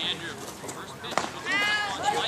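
People calling out across a baseball field: scattered distant voices, a short sharp knock about a second in, then one drawn-out shouted call near the end.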